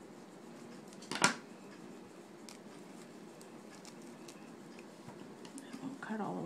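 Scissors snipping through folded wired fabric ribbon: one loud, sharp snip about a second in, then a few faint clicks of the blades.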